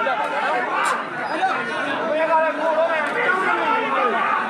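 Crowd chatter: many voices talking over one another at once, with no single clear speaker.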